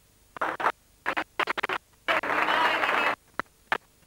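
Damaged videotape playback with its sound cutting in and out: short bursts of scratchy, garbled noise, including one longer stretch of about a second near the middle, each broken off abruptly by near-silent dropouts.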